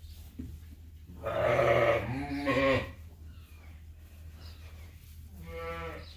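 Sheep bleating: one long, wavering bleat about a second in, then a shorter, quieter bleat near the end.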